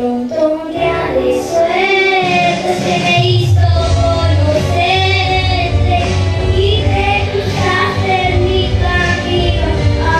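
A young girl singing a Spanish-language ballad into a microphone over backing music, with vibrato on her held notes.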